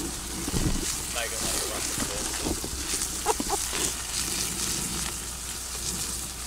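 Steak frying with a steady sizzling hiss, with brief, faint voices in the background.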